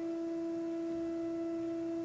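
Organ holding a single soft, nearly pure note on a flute-like stop, steady and unchanging.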